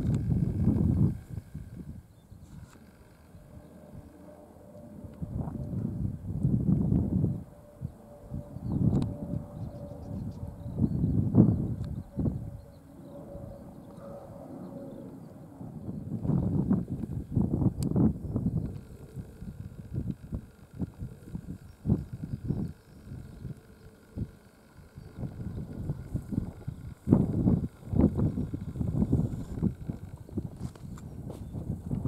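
Wind gusting over the microphone: irregular low rumbles that swell and die away every few seconds.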